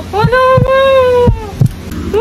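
Heartbeat sound effect: low thumps in pairs, about once a second, under a held, wavering tone.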